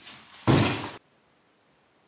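A short rush of noise, then a loud, heavy thud that lasts about half a second and cuts off abruptly about a second in.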